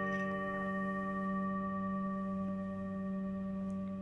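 Background meditation music: a sustained singing-bowl tone ringing steadily over a low drone.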